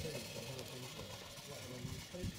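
Faint voices talking, over a steady hiss.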